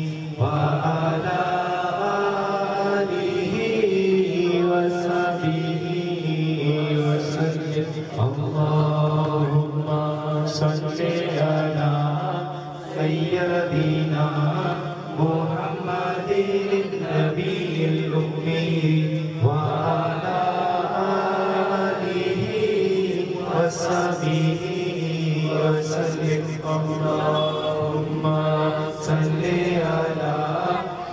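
A group of men's voices chanting salawat, the devotional blessing on the Prophet Muhammad, in a continuous sing-song recitation.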